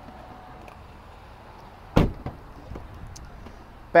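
A car door on a 2012 GMC Yukon Denali shutting once: a single sharp thump about two seconds in, over faint steady background noise.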